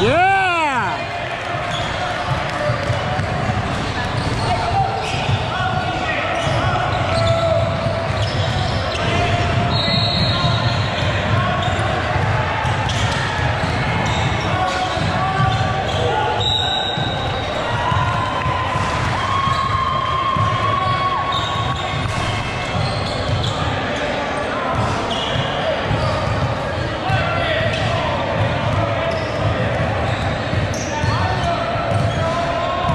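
Indoor youth basketball game echoing in a large gym: the ball bounces as it is dribbled, and players and spectators talk and call out. A loud squeak sweeps down in pitch at the very start, and two short, high referee's-whistle blasts sound about ten and seventeen seconds in.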